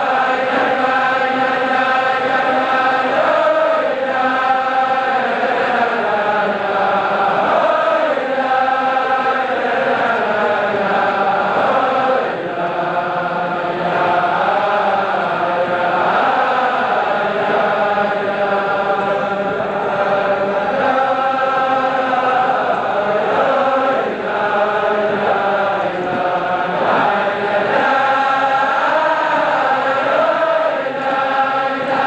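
A large crowd of men singing a Chasidic niggun together, one melody rising and falling and held steadily throughout.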